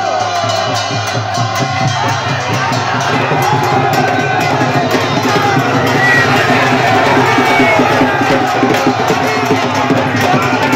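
Dense festival crowd shouting and cheering over continuous drumming and music, with many voices overlapping.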